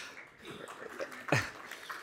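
Quiet laughter, with a short burst about a second and a half in.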